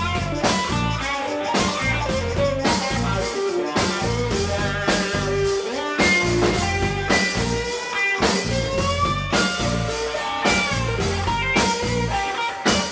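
Live rock band playing an instrumental passage: electric guitar lines with bending, gliding notes over bass guitar and a steady drum-kit beat.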